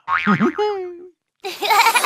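Cartoon sound effects: a springy, boing-like pitch glide that lasts about a second, then a short gap and a bright swishing transition sound.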